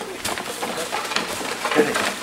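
Birds calling, with low cooing notes like a dove, over a busy run of short clicks and rustles.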